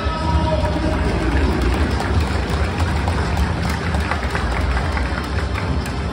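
Stadium public-address music with a heavy, steady bass, over the noise of the crowd in the stands.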